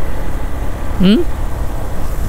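Wind rushing over the microphone mixed with the motorcycle's engine and road noise while riding: a steady, low-heavy roar that flutters constantly.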